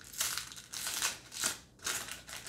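Paper wrapper of a Topps Match Attax trading-card pack being torn open and peeled back by hand, crinkling in several short bursts.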